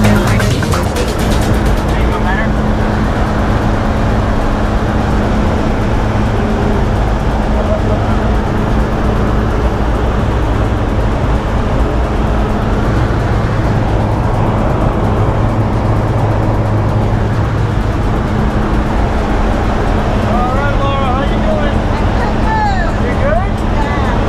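Steady, loud drone of a single-engine propeller jump plane, heard from inside the cabin as it climbs to altitude. Voices and laughter rise over the drone near the end.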